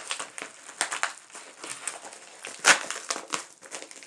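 Plastic packaging crinkling and crackling as it is handled and pulled open, with a sharp louder crackle at the start and another past the middle.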